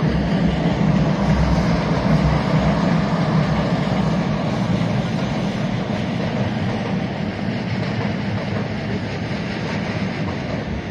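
Electric commuter train of the Chūō-Sōbu Line running on an elevated track: a steady rumble and rail noise that eases a little in the second half.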